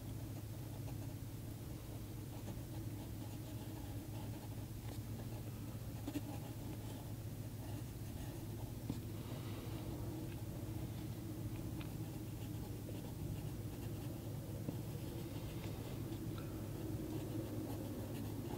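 Pencil sketching on watercolour paper, a faint scratching as the line is drawn continuously, over a steady low hum.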